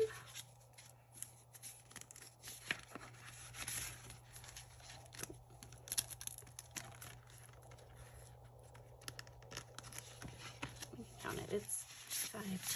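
Paper banknotes and a clear plastic cash envelope rustling and crinkling as bills are pulled out and flipped through by hand: faint, irregular rustles and soft clicks.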